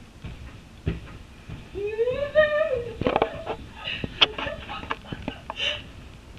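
Someone jumping on a bed: a thump about a second in, then a run of short knocks and bumps. About two seconds in, a woman's voice gives one wordless call that rises and falls.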